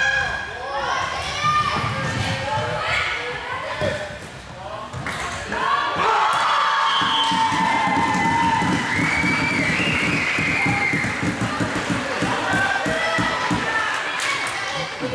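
Floorball players shouting in a large sports hall, with ball and stick knocks. From about six seconds in, a long sustained cheer rises over a fast rhythmic knocking that lasts almost to the end.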